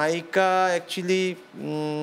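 A man's voice drawing out long, level syllables between short pauses: hesitant, sing-song speech while he searches for words.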